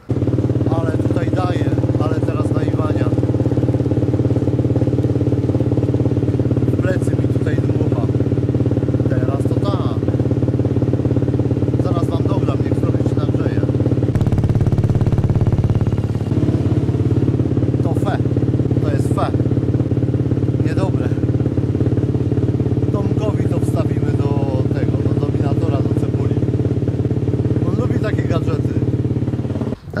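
Dirt bike engine idling steadily through an FMF exhaust; its note briefly changes about halfway through.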